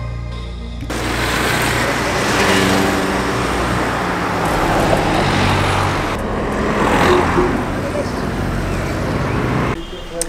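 Road traffic: cars driving past with a steady rush of engine and tyre noise, swelling as vehicles pass close, loudest about seven seconds in.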